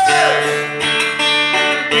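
Acoustic guitar strummed, playing chords between sung lines.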